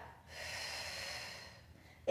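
A woman's steady breath out, about a second long, exhaled on the effort of a Pilates curl-up.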